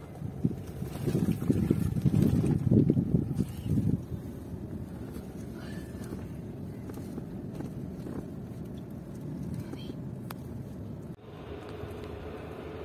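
Car cabin noise from inside a moving car: a low rumble of engine and tyres, heavier and more uneven for the first few seconds, then steady.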